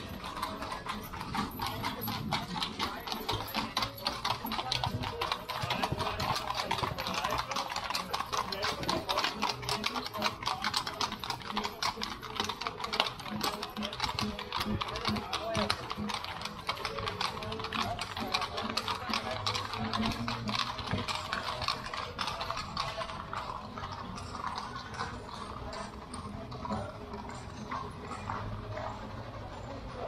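Horses' hooves clip-clopping on cobblestones as horse-drawn fiaker carriages move across the square, a dense run of clops from several horses that thins out in the last few seconds.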